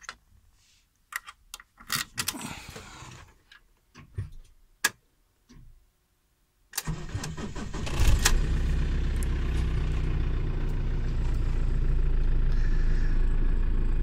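Optare Alero minibus's diesel engine being started: a few scattered clicks and knocks, then about seven seconds in the starter cranks for about a second. The engine catches with a loud burst and settles into a steady idle.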